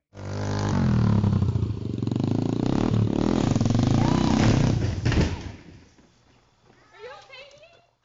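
Small dirt bike engine running loud and revving, cutting off suddenly about five seconds in. A voice calls out briefly near the end.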